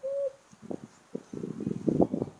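A short, held hooting note at the very start, then a run of irregular soft knocks and scuffs.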